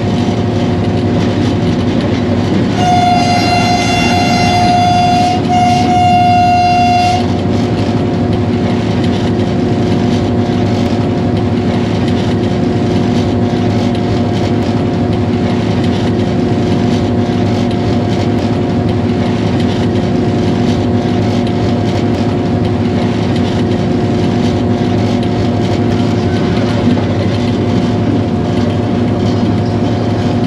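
HGMU-30R diesel-electric locomotive running at speed: a steady engine drone with wheel-on-rail noise. About three seconds in, a train's air horn sounds two blasts, the first longer, stopping about seven seconds in.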